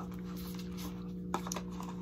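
Faint light clicks as a new Apple Watch is handled, two of them about one and a half seconds in, over a steady low electrical hum.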